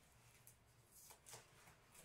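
Near silence: room tone with a few faint, brief rustles of cotton cape fabric being handled and pressed at the neck, about half a second and a second in.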